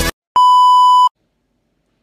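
Electronic music cuts off, then a single steady electronic beep sounds for under a second and stops abruptly.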